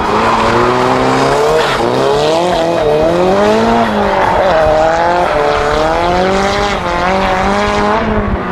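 Drift car engine revving hard, its pitch rising and falling again and again as the throttle is worked through a sustained slide, with tyres squealing on the tarmac.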